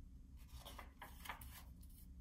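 Faint rustle of a picture book's paper page being turned, a few soft swishes in the first second and a half, over a low steady room hum.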